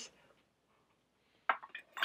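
Quiet at first, then, from about a second and a half in, a few light clinks and a sharper click of a metal candle wick tool knocking against the glass jar or being set down.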